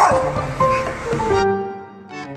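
A Taiwanese mixed-breed dog barks angrily at the start, its bark loud and short and fading within a moment. Background music with held notes follows.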